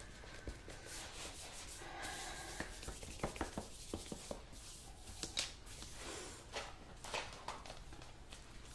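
Hands rubbing and smoothing sugarpaste over a dome-shaped cake: faint soft rubbing with scattered small clicks.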